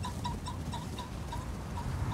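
Open pasture ambience: a bird chirping in short repeated notes, about four a second, over a low, steady rumble of wind.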